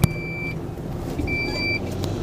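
Two electronic beeps, each about half a second long and about a second and a quarter apart, over the low steady running of the lorry's engine heard inside the cab. There is a sharp click right at the start.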